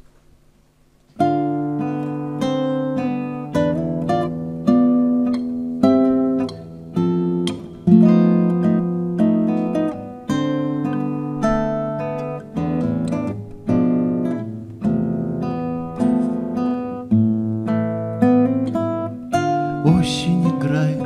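Solo acoustic guitar played with the fingers, starting about a second in: chords and melody notes plucked and strummed about once or twice a second, each ringing and decaying before the next.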